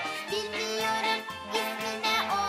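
Background music: a melody over a steady bass pulse.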